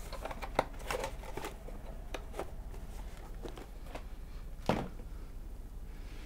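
A cardboard box of phone screen assemblies being rummaged by hand: light clicks of plastic parts and rustling cardboard over the first couple of seconds, with a sharp knock about half a second in. A duller thump comes near the end, the loudest sound.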